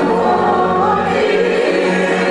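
Many voices singing a hymn together in chorus, at a steady level.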